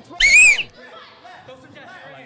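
A man's brief, very high-pitched falsetto squeal of excitement, rising then held for about half a second just after the start, followed by faint background crowd chatter.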